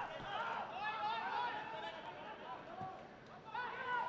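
Faint voices calling and shouting on a football pitch during open play, several overlapping at once.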